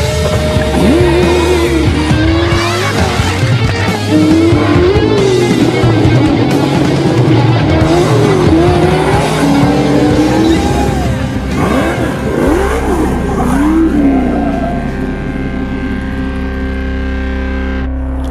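Supercharged VW Baja Bug engine revving hard over and over, its pitch rising and falling, with tyre squeal and background music underneath. For the last few seconds the sound settles into a steadier drone.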